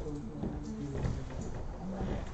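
Several people talking indistinctly in a lecture hall, with a few light knocks.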